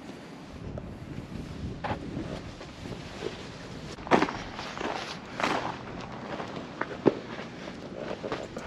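Footsteps on gravel and stone paving: a handful of uneven steps, the loudest about four and five and a half seconds in, over a low background rumble.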